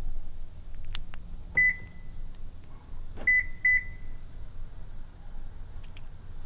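A Lexus car's beeper answers the key fob: one short beep about one and a half seconds in, then two quick beeps about three seconds in, all at the same pitch and each fading briefly. Faint clicks come just before the first beep, over a low steady outdoor rumble.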